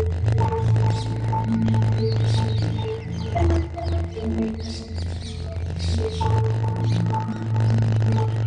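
Dramatic television background score: long held low notes that shift every second or two under steady higher tones, with brief high chirping sounds a few times.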